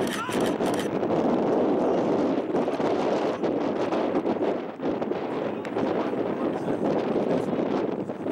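Crowd of baseball spectators cheering and shouting in a steady mass of voices, for a hit run out to third base.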